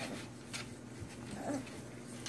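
Five-week-old American Bully puppies whimpering softly a few times, in short faint cries.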